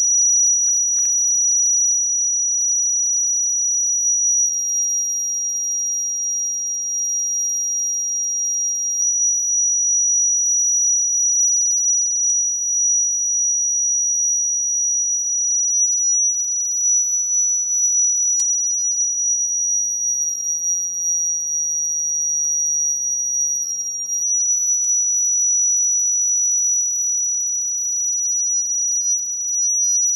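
Acoustic feedback sounded through a woodwind's body: one loud, steady, high whistle with a fainter tone an octave above it. Its pitch steps slightly down and back up a few times, as the feedback tone shifts when the player opens or closes keys.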